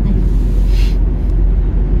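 Inside-the-cabin noise of a Hyundai car driving along a city road: steady low rumble of the engine and tyres, with a short hiss about a second in.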